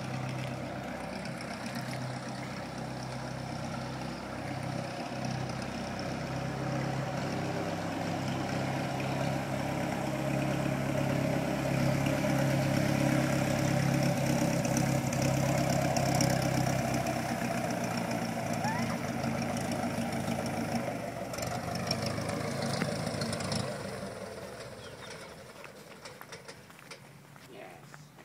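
Piston engine and propeller of a single-engine Cessna running at low taxi power as the plane rolls toward the listener. The engine sound grows louder to a peak around the middle. It drops off in the last few seconds while the plane is still close, as the engine is throttled back.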